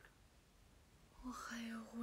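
Faint room tone, then a young woman's voice begins speaking softly about a second in.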